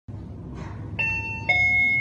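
Fujitec elevator's two-note chime: a high tone about a second in, then a lower tone half a second later that rings on, over a low steady background hum.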